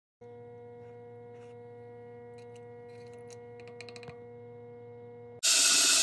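A faint steady electrical hum with a few light ticks, then about five seconds in a loud, even rushing hiss cuts in suddenly: a magnetic pin tumbler running with water in its bowl.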